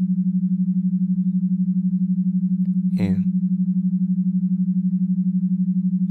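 A steady low droning tone, pulsing rapidly and evenly in loudness, the kind of isochronic-style tone bed laid under hypnosis audio. About three seconds in, a brief sound slides sharply down in pitch.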